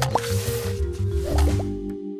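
Short intro jingle: music with quick pitch-sliding pop sound effects over a bass line, ending on a held chord that fades.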